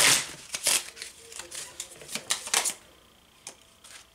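A deck of tarot cards being shuffled by hand: a quick, uneven run of card snaps and flicks that stops a little under three seconds in.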